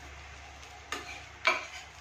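A spatula knocking twice against a tawa with a paratha cooking on it, the second knock the louder, over a faint sizzle.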